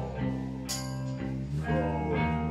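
Live rock band playing an instrumental stretch without vocals: electric guitar and bass holding sustained chords, with a percussion hit shortly after the start.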